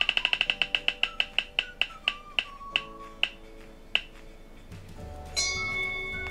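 Spinning online roulette wheel's ticking sound effect: rapid ticks that slow steadily and stop about four seconds in as the wheel comes to rest. A held tone starts about five and a half seconds in.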